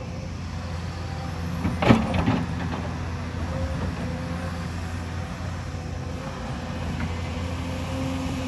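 Hyundai crawler excavator's diesel engine running steadily under working load. About two seconds in comes a short, loud clatter as the steel bucket comes down on rocky soil.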